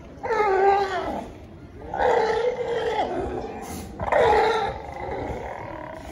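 California sea lions barking: three loud calls about two seconds apart, each lasting around a second.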